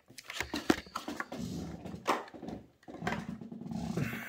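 A clear plastic display case and the diecast model car inside it being handled, making scattered light plastic clicks and taps. A low hum-like sound comes in about halfway through.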